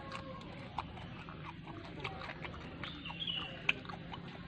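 Close chewing and lip-smacking of a man eating fried fish and rice by hand: a string of small, irregular wet clicks over a low steady background.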